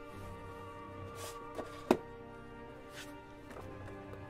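Background music with sustained notes, over a few handling sounds from a paperback book being picked up and turned over on a tile floor. The loudest is a sharp knock about two seconds in.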